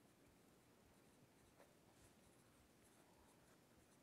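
Faint scratching of a pencil writing on an index card, heard over a near-silent room.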